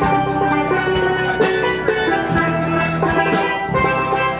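Steel pan band playing a tune: several steel pans sounding chords and melody over a drum kit keeping a steady beat and an electric bass guitar.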